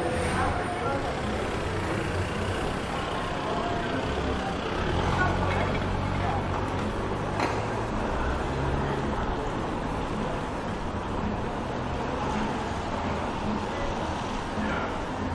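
Street ambience: a motor vehicle's engine running close by, with a low hum that is loudest around the middle, and passers-by talking.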